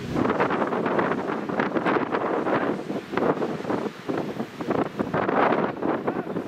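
Wind buffeting the camera's microphone: a loud, uneven rushing that swells and dips.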